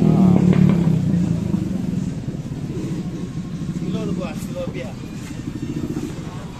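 A motorcycle engine running close by, loudest at the start and fading away over the first couple of seconds, among people talking.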